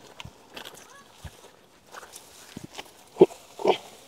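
A pig grunting twice, loudly, about half a second apart near the end, after a few seconds of faint rustling and snapping of grass being cut and gathered.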